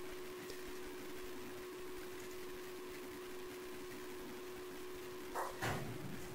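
Quiet room tone: a low steady hiss with a faint constant hum, and a brief soft sound shortly before the end.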